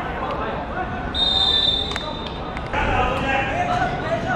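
Players shouting on a football pitch, with one steady whistle blast of about a second a little after the first second and a sharp knock, like the ball being kicked, as it stops.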